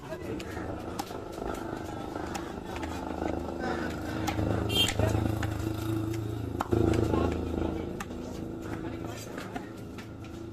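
Voices talking, with a motor engine running, the engine louder in the middle. A few sharp knocks of a large knife striking a wooden chopping block as a fish is cut, the loudest about two-thirds of the way in.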